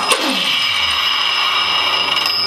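Old three-phase 400 V polishing machine switched on: its electric motor starts suddenly and runs steadily at about 3000 rpm, with a high whine over a rushing mechanical noise. It sounds brutal.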